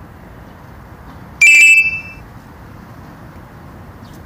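A single short, loud electronic beep about a second and a half in, over steady low background noise.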